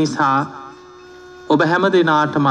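A man's voice speaking in two short phrases with a pause of about a second between, over a steady electrical hum.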